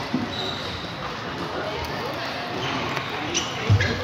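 Table tennis balls clicking off bats and tables, from this rally and the many tables around it, over a constant murmur of voices in a large hall. Near the end come a few sharper clicks and a heavier low thump.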